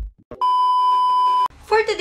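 A short low thump, then a steady electronic beep held for about a second that cuts off sharply. A woman's voice starts right after it.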